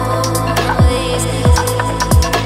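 Electronic music: deep kick drum hits that drop in pitch, three of them in two seconds, with sharp hi-hat ticks over a held bass note and steady synth tones.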